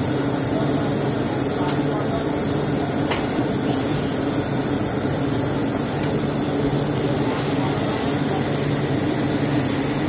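Steady drone of plywood-factory machinery: a constant low hum with a thin high whine above it, unchanging throughout.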